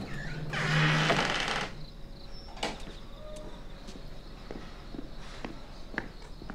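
A heavy wooden double door is pushed shut with a low creak and scrape lasting about a second and a half, followed by a single sharp knock as it closes. Faint light steps follow, with night insects chirping in the background.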